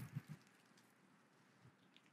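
Near silence, with a few faint low knocks in the first half-second.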